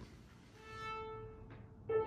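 Viola playing one held bowed note that swells and fades away, then a new note begins just before the end.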